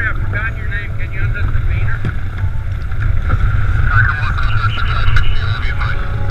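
Wind buffeting the microphone with a heavy low rumble, while a handheld marine VHF radio speaker carries a thin, muffled voice transmission in two stretches, the Coast Guard replying to the kayakers.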